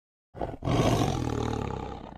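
A tiger's roar sound effect: one long roar beginning about a third of a second in after a short lead-in, then slowly fading away near the end.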